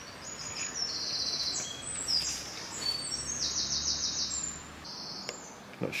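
A small songbird singing: a run of high, quick phrases with a rapid trill about halfway through, over a steady outdoor background hiss.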